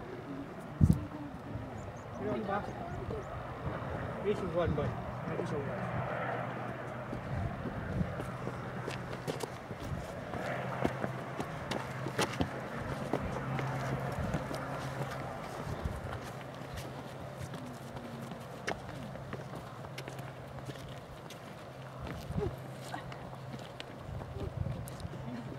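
Indistinct, murmured voices over a steady low drone, with scattered sharp clicks of handling noise.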